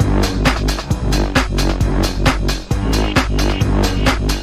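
UK garage dance track playing through a DJ mix, with a steady, fast beat over a deep sub-bass line.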